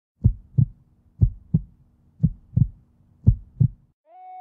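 Heartbeat sound effect: four deep lub-dub double thumps, about one a second, over a faint low hum.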